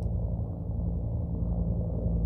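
A steady low rumble with a faint low hum, with no distinct events.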